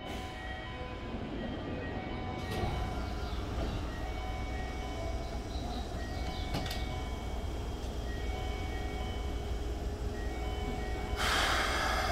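Keikyu 1500-series electric commuter train standing at the platform, its onboard equipment running with a steady low hum. There are a couple of brief clicks, then a sudden loud hiss about eleven seconds in.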